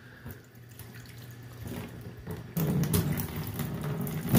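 Faucet running into a utility sink, the stream splashing onto a microfiber towel held under it; the splashing gets louder about two and a half seconds in as the water hits the towel.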